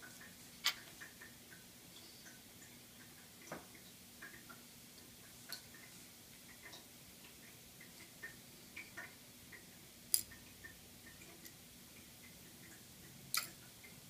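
Scattered faint clicks and ticks of metal tweezers picking up and setting down beetle elytra (wing cases) on a wooden board. The sharpest click comes about ten seconds in and another near the end.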